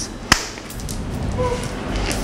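A single sharp knock about a third of a second in, followed by faint room noise.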